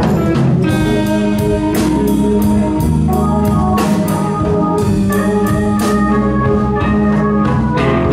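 Live blues band playing, with organ chords held out front over a drum kit with regular cymbal strikes and electric guitars.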